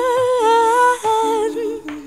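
A woman humming a wordless melody in a song. She holds long notes with a slight waver and steps down in pitch twice, over a lower sustained accompanying line, and the sound fades somewhat near the end.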